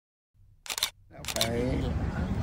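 Dead silence, then about a third of the way in a low outdoor background rumble starts with two short bursts of noise like microphone handling, and a man's voice begins speaking near the end.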